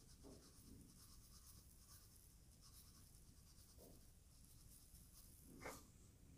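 Near silence, with faint light pattering of iron filings sprinkled onto paper around a bar magnet, and a slightly louder soft tap near the end.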